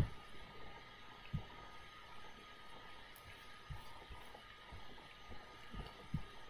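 Quiet room hiss with a few soft, low knocks and faint clicks, from computer mouse clicks and desk bumps picked up by the microphone.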